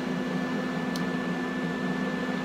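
Steady hum of a running appliance motor: a low drone with a faint, thin high whine above it, and a single small click about a second in.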